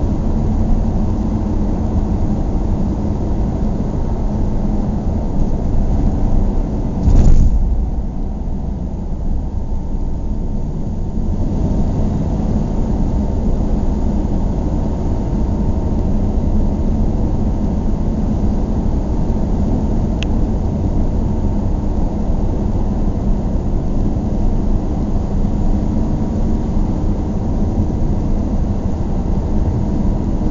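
Steady low rumble of a car driving, from engine and road noise, with a single loud thump about seven seconds in.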